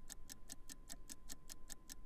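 Countdown-clock ticking sound effect: fast, even, faint ticks, about ten a second, over a faint steady tone.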